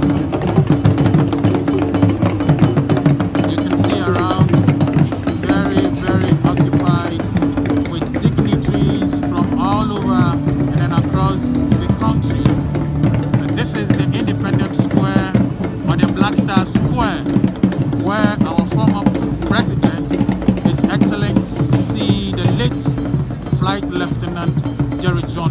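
Music with dense, steady drumming and a wavering sung or melodic line over it, mixed with the voices of a crowd.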